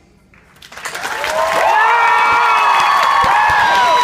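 A theatre audience breaks into loud applause and cheering, with many high shouts and whoops over the clapping. It starts suddenly under a second in, right as the a cappella song ends.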